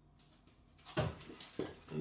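A large emery paper disc being picked up and handled: a sharp knock about a second in, then several quick handling noises of the stiff paper.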